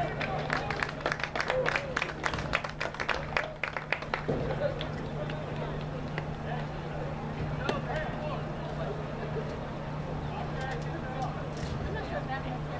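Spectators' voices and shouts at a rugby match, with a burst of quick, even claps for the first few seconds, over a steady low hum.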